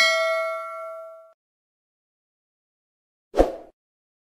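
Bell-style chime sound effect as an animated notification bell is clicked on a subscribe end screen: one bright ding that rings out and fades over about a second. A brief soft whoosh-like effect follows near the end, as the graphic disappears.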